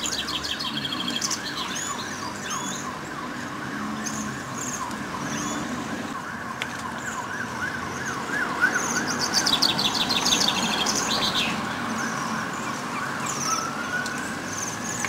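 A flock of Bohemian waxwings calling, with clusters of high, ringing trills throughout over a dense run of lower, quickly wavering chirps.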